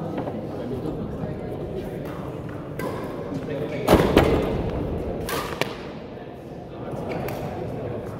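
Badminton doubles rally: sharp racket strikes on the shuttlecock and thuds of players' shoes on the court floor, the loudest a quick pair about four seconds in and another about a second and a half later, over a murmur of voices in the hall.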